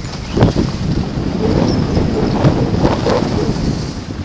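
Wind buffeting a body-worn camera's microphone during a downhill ski run, an uneven rushing noise, with the scrape of skis on snow.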